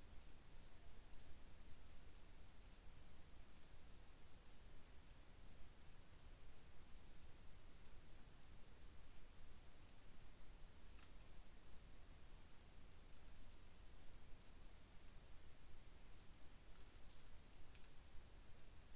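Faint computer mouse clicks at an irregular pace, roughly one or two a second, over a low steady hum.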